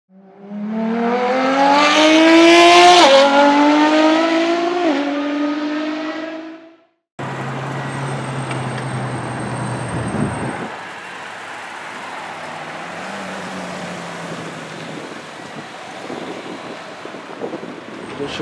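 Car engine accelerating hard through the gears, its pitch climbing and dropping sharply twice at the upshifts, then fading away. After a short break, street traffic noise follows, with a low engine hum from a nearby car that stops about ten seconds in.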